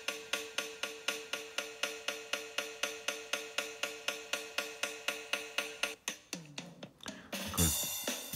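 Electronic drum loop from the DigiStix app, chopped by the GlitchCore glitch effect into one short slice retriggered about four to five times a second. It makes an even stuttering pulse with a steady pitched ring. About six seconds in the stutter stops and the drum pattern comes back.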